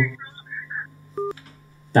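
A single short telephone-line beep, a little over a second in, as a caller's line is disconnected at the end of a phone-in call, over a low steady hum.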